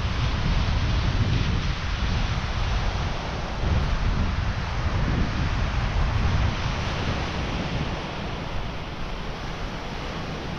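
Black Sea surf breaking and washing on a sandy beach, with wind buffeting the microphone in uneven gusts that ease a little after about seven seconds.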